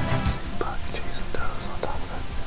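A man whispering close to the microphone, soft hissing syllables, with quiet background music underneath.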